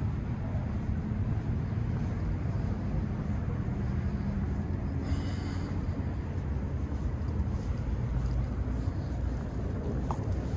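Steady low outdoor rumble with no distinct events.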